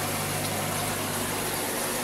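Aquarium filter pump running, a steady low hum under the constant rush of water from its outlet jet.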